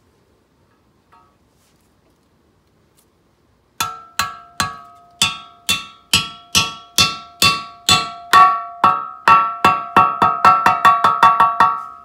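A hammer drives a Delrin pivot bushing into a Honda ATC 200X swingarm pivot tube, and each blow has a clear metallic ring. The blows start about four seconds in, roughly two a second, and speed up to several a second toward the end as the bushing bottoms out.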